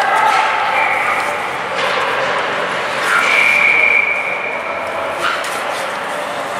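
Echoing ice-rink noise during a youth hockey game: high voices shouting, with a long, high, steady call from about three seconds in to about four.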